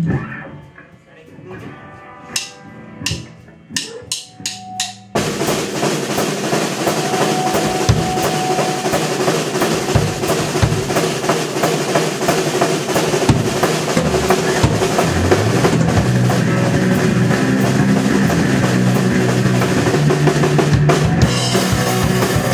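A live rock band starting a song. After a few separate sharp hits, drum kit and electric guitar come in loud together about five seconds in and play on at full volume with a driving beat.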